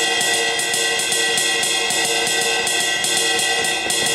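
A sampled cymbal from GarageBand's iPad drum kit, played back as a one-instrument drum part: rapid, even strokes that blend into a continuous ringing wash at a steady level.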